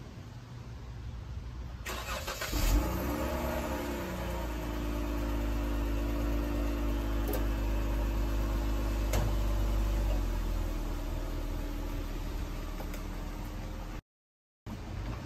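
Jeep Grand Cherokee engine cranked and catching about two seconds in, with a brief rev flare that drops back to a steady idle. Near the end the low engine sound shifts as the SUV pulls away.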